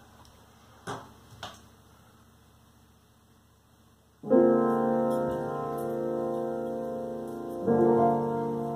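Two soft knocks about a second in. Then, about four seconds in, a piano chord is struck and left ringing, with a second chord struck near the end: the opening chords of a slow improvisation.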